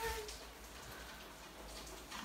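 Quiet room tone with a faint steady hiss; a brief voiced sound trails off right at the start.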